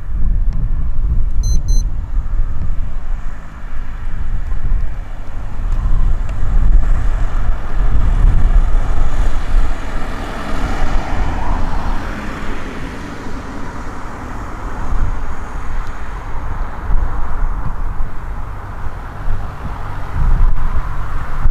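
Single-engine light aircraft's propeller engine, throttled back for approach and landing, a low drone that swells in the middle and eases off again, under heavy wind rumble on the microphone.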